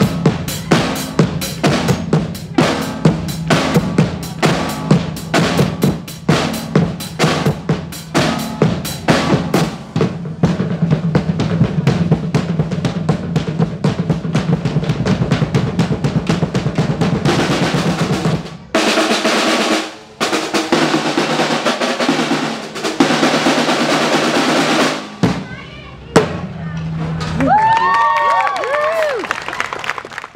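A drumline of snare drums, tenor drums and a bass drum playing a fast cadence of sharp strikes and rimshots that builds into dense rolls and stops about 18 seconds in. After a short break comes a long spell of noise that sounds like applause, with high rising-and-falling whoops near the end.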